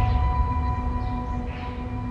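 Drama background score: the ringing tail of a bell-like synth hit, a steady chime over a deep rumble, slowly fading.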